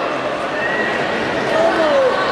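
Crowd of spectators shouting and calling out in a reverberant sports hall, many voices overlapping into a steady din, with a few long, high shouts rising above it.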